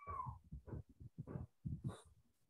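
A short, high-pitched animal call falling in pitch at the start, followed by several faint short sounds.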